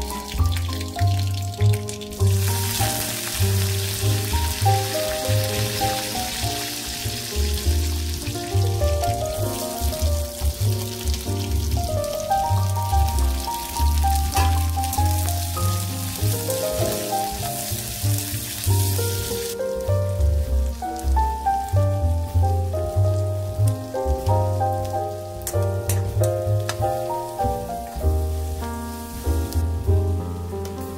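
Instrumental background music with a steady low beat, over the sizzle of garlic, green chillies and onions frying in hot oil in a pan; the sizzle starts about two seconds in and drops away about two-thirds of the way through.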